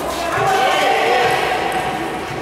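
Voices in a large echoing sports hall between table tennis points, with light knocks of table tennis balls bouncing.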